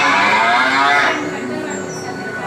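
A cow's moo: one loud call lasting about a second.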